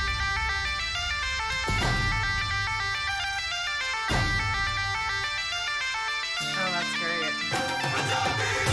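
Bagpipe melody over a steady drone, with dhol drumming underneath: Celtic-Punjabi folk music in a bhangra style.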